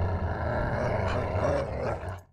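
Animal growl sound effect: a loud, rough snarl lasting about two seconds that ends abruptly.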